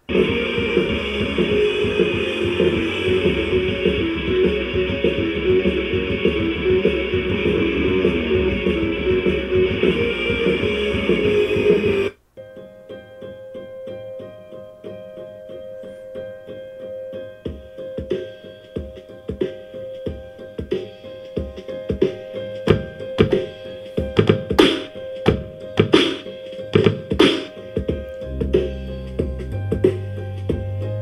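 Music from an SD card playing through a Sylvania SP770 boombox DJ speaker. A dense, loud track stops abruptly about twelve seconds in. A quieter track follows, with held notes and sharp hits that come more often and grow louder.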